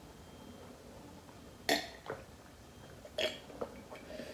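A person gulping water from a glass: two short gulps about a second and a half apart, with a fainter swallow between them.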